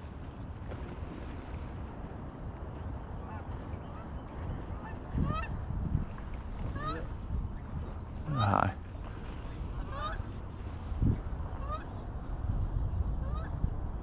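A flock of Canada geese honking: short rising calls repeated every second or so, starting a few seconds in and coming more often toward the end. A brief laugh about eight seconds in.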